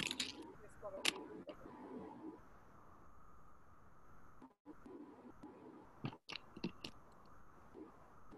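Faint handling noise of white wired earbuds being untangled and pushed into the ears: scattered small clicks and rubbing as the cable brushes near the microphone. The sound drops out completely for a moment twice.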